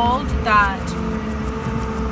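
A steady low engine rumble, heard from inside a stationary car, with a faint steady hum. A woman makes two brief vocal sounds in the first second.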